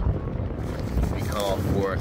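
Wind buffeting the phone's microphone: a steady, loud low rumble.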